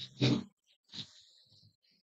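A man's voice in a church: a couple of short pitched syllables near the start, then a pause.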